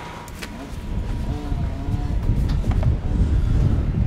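Wind buffeting the microphone: a low, irregular rumble that grows louder about a second in.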